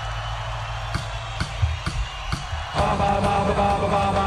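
Live rock band starting a song: drum strokes about twice a second over a low bass sound, then guitars and the full band come in loudly nearly three seconds in.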